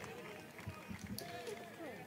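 Faint ballpark ambience: a low murmur with distant, indistinct voices.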